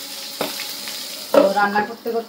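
Pieces of fish frying in oil in an open pan, sizzling steadily, with one short click a little under half a second in.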